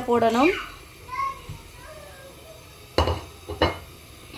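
Two short clattering knocks of kitchenware, the first about three seconds in and the second about half a second later, while chopped raw liver is being put into a non-stick wok.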